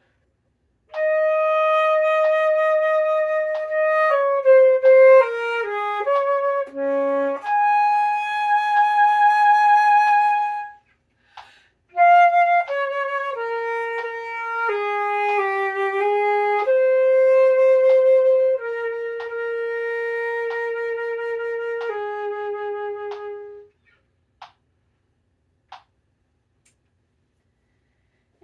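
Solo concert flute playing the slow closing passage of an etude in two phrases, with a breath break about eleven seconds in. The second phrase ends on long held low notes, the last one a fermata, and the playing stops about two-thirds of the way through.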